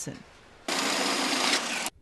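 A loud burst of hissing machine noise on a factory floor. It starts suddenly under a second in and cuts off just before the end, after about a second.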